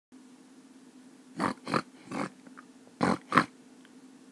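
Pig oinks: five short grunts, three in quick succession and then two more, over a steady low hum.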